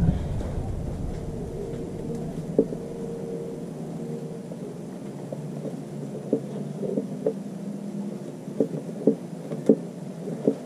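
Scattered faint clicks and taps over a steady low hum, more frequent in the second half: hands unscrewing the lube pump fitting from the outboard lower unit's bottom drain hole and fitting the drain screw.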